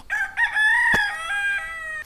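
A rooster crowing once: one long call that holds level and then falls in a few steps toward the end.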